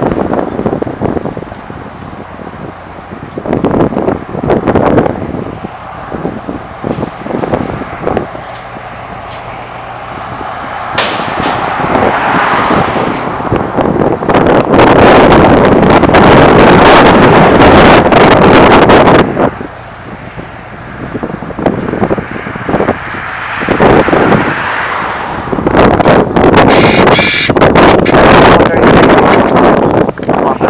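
Outdoor wind buffeting the microphone over vehicle noise. It swells into a loud gust through the middle, breaks off sharply, then picks up again near the end.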